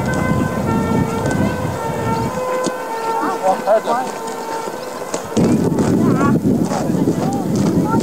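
Wind buffeting the microphone in gusts, with children's shouts from the game across the field. The rumble dies away about two and a half seconds in and comes back strongly about five seconds in, while a faint steady hum runs underneath.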